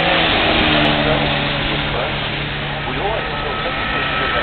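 Racing car engines on a circuit, a car passing with its note sliding in pitch over a steady wash of engine noise.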